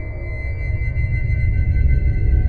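Dark ambient horror film score: a deep low drone with thin, steady high tones held above it, swelling slightly toward the end.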